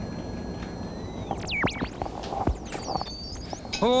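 Electronic synthesizer sounds: thin steady high tones that bend away about a second in, then quick swooping sweeps down and up and wavering high warbles, over a low hum.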